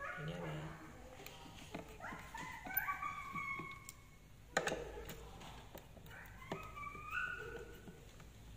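Knocks and clicks of a woofer being pried and lifted out of a speaker cabinet, the sharpest knock about halfway through. Two high, wavering squeaks of a second or so each come in between.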